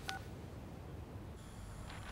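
One short electronic beep from a mobile phone right at the start, the tone of a call being ended, followed by low room tone.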